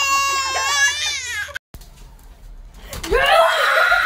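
A baby crying in one long, high wail that ends abruptly after about a second and a half. Near the end, a child screams loudly.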